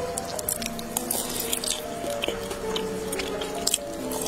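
Close-up wet, squishy mouth sounds of biting and chewing meat off a fried chicken drumstick, with scattered sharp clicks, over background music with sustained notes.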